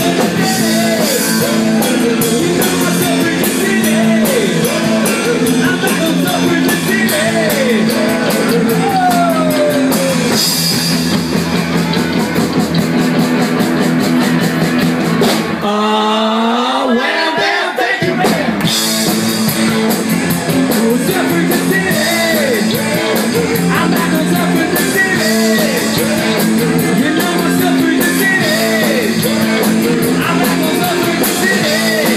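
A live rock band playing loud: electric guitars, bass guitar and drum kit, with singing. About halfway through, the band stops for about two seconds, leaving one line bending up and down in pitch, then crashes back in.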